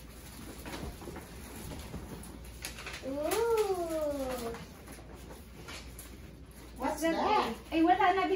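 One drawn-out vocal call about three seconds in, lasting about a second and a half, rising and then falling in pitch; a short voice sound follows near the end.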